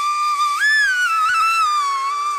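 Background music: a solo flute holding long notes, stepping up about half a second in and sliding back down to the held note.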